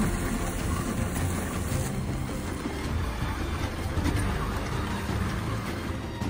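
Dog sled running over packed snow: a steady rushing scrape from the sled's runners as the team pulls it along the trail.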